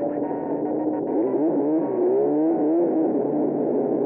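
Snowmobile engine heard from on board, running and then revving up and down between about one and three seconds in.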